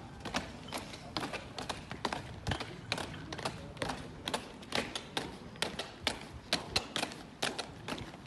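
Boots of a squad of soldiers marching on a tarmac parade ground: a run of sharp, irregular footfall clicks, several a second.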